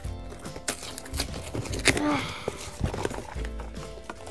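A cardboard toy box being pulled open by hand, its flap and paper insert giving a few sharp crackles and clicks, with music playing in the background.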